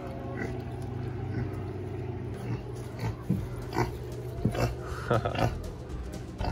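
Potbellied pigs grunting: short, scattered grunts that come more often in the second half, over a steady low hum.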